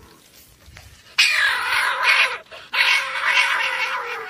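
A cornered marbled polecat screeching and hissing in defensive threat, two long harsh calls, the first about a second in and the second running through the last second.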